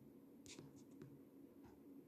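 Near silence: faint room hum with three soft clicks, the first and loudest about half a second in.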